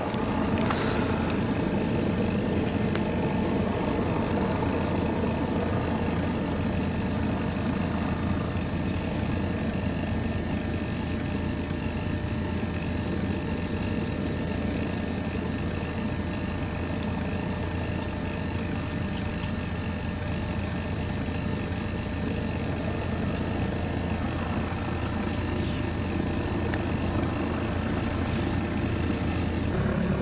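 A steady engine-like hum, with insects chirping over it in runs of short, regular high chirps that stop and start again.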